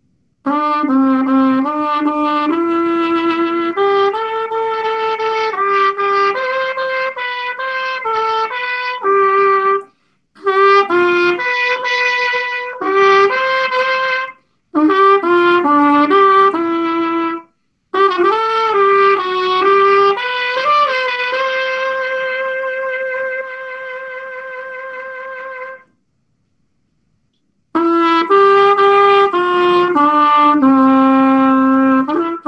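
Solo trumpet playing a melody unaccompanied, in phrases of short notes broken by brief pauses. Later a long note is held, growing softer partway through before it stops, and after a short silence the playing resumes near the end.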